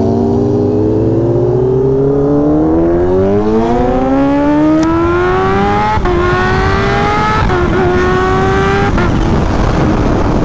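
Kawasaki Ninja H2's supercharged inline-four pulling hard from a stop: the engine note climbs steadily for about six seconds, then drops briefly at each of the gear changes near six, seven and a half and nine seconds. Wind rush grows as the bike gains speed.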